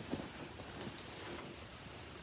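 Faint handling noise from knitting and its fabric project bag: a soft knock just after the start, then light rustling.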